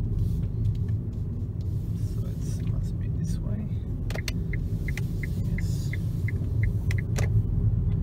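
Low, steady road and tyre rumble heard inside the cabin of a 2012 Nissan Leaf electric car as it drives through a roundabout. About halfway through, a turn indicator ticks evenly, about three ticks a second, for some three seconds.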